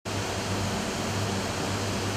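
Steady industrial roar of a steelworks furnace hall, with a low hum under it.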